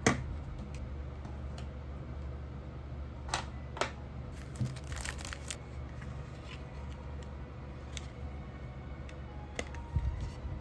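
Clicks and small plastic-and-metal taps from handling an M.2 SSD, a PCIe expansion card and a 2.5-inch SATA enclosure: a sharp click at the start, two more a few seconds in, a quick flurry about five seconds in and scattered ones near the end, over a steady low background hum.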